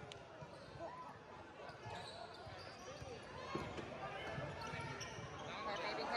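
Basketball being dribbled on a hardwood gym floor, with spectators' voices and shouts in the gym throughout.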